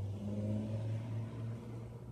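A low, steady mechanical hum that eases off slightly near the end.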